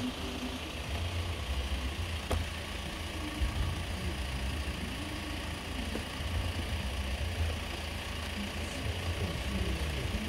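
A road vehicle's engine idling with a steady low rumble, and one sharp click about two seconds in.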